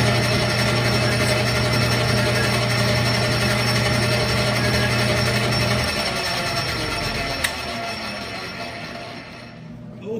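Metal lathe running, its motor humming steadily with the three-jaw chuck spinning. About six seconds in the motor is switched off and the sound fades as the lathe winds down. There is one sharp click about a second and a half later.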